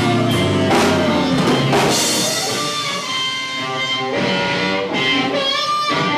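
Live blues band playing: harmonica cupped to a microphone over electric guitar and a drum kit, with drum hits spread through the passage and a held note bending down in pitch at the start.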